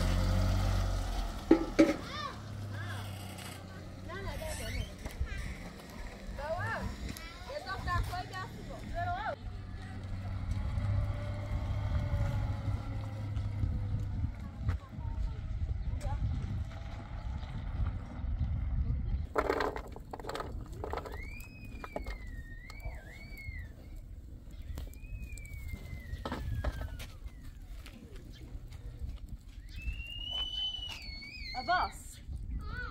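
Pickup truck engine running at low revs at the start, with two sharp knocks about a second and a half in, then a low rumble with faint distant voices. Later, a series of high calls glide up and down.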